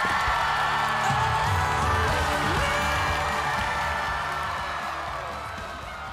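A trot stage number ends on a held final chord, with a studio audience cheering and applauding over it. The sound fades down steadily.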